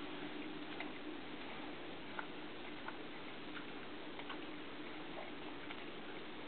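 Quiet indoor room tone: a faint steady hum and hiss with scattered light ticks, irregularly spaced about a second apart.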